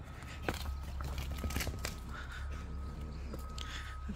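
Low rumble of wind on the microphone, with a few soft knocks and scuffs in the first couple of seconds as a Dogue de Bordeaux paws at a tennis ball on bare earth. A faint steady high tone runs underneath.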